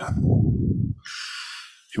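A man's breath hitting a headset microphone: a puff of exhaled air that rumbles low on the mic for about a second, then a hissing inhale.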